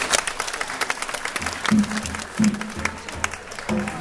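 Audience clapping over salsa dance-show music. A bass line comes in about a second and a half in.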